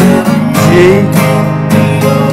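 Acoustic guitar, capoed on the second fret and tuned a half step down, strummed down-up on a G chord in a driving pre-chorus pattern, with several strokes in quick succession.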